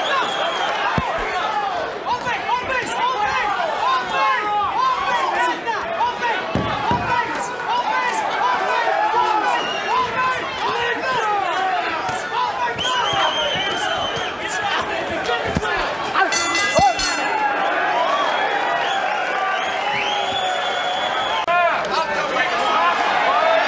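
Boxing arena crowd shouting and cheering, with many voices yelling over one another and a few dull thuds. A steady high tone sounds twice, about 13 s in and again near the end, and a quick rattle of clicks comes between them.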